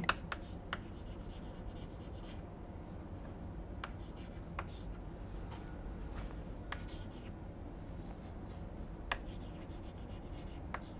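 Chalk writing on a chalkboard: faint scratching with a scatter of light, sharp taps as the chalk strikes the board, over a low steady room hum.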